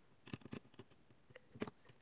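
A few faint, scattered small clicks and taps of a screwdriver and gloved hands on a multimeter's circuit board and plastic case, during reassembly.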